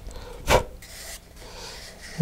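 A single stroke of medium-grit sandpaper on a paper model-rocket transition shroud about half a second in, after the steady sanding has stopped, followed by faint rubbing as the part is handled.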